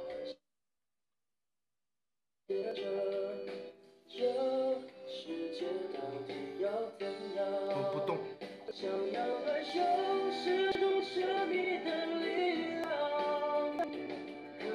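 A pop song with sung vocals over instrumental accompaniment. The audio drops out completely for about two seconds just after the start, then the song resumes.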